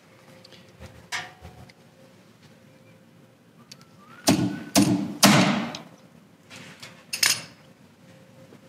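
Slide hammer on a glue-pull tab for paintless dent removal, struck three times in quick succession about halfway through, each a sharp metallic knock, with one shorter knock near the end; it is pulling a small dent out of a car's steel rear fender.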